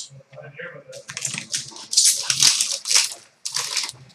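Foil trading-card pack wrapper being torn open and crinkled: a run of irregular crackling rustles starting about a second in.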